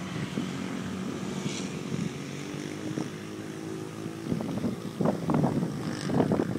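An engine hums steadily in the background and fades after about three seconds. Wind then buffets the microphone in gusts from about four seconds in.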